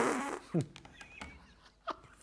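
A burst of laughter that trails off into breathy exhales within the first half second, then quiet apart from a few faint small sounds and a short click near the end.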